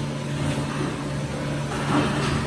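Injection moulding machine running: a steady low machine hum made of a few constant tones, with a brief rise in rustling noise near the end.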